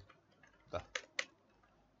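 Two sharp computer keyboard key clicks about a second in, a quarter of a second apart.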